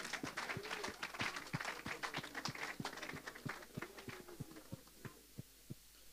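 A small congregation clapping hands in acclamation, with some faint voices. The clapping thins out and dies away about five seconds in.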